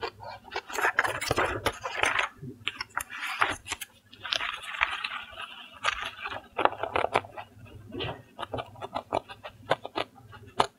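Scissors cutting through a paper pattern sheet: a rapid, irregular run of crisp snips and clicks from the blades. Bouts of paper rustling and crinkling come as the sheet is turned, around one to two seconds in and again about halfway.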